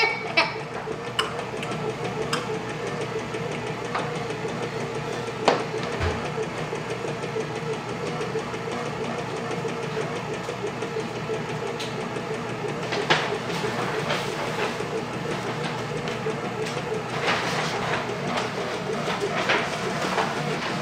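Oster bread maker's kneading motor running with a steady hum, with a few sharp knocks against the machine.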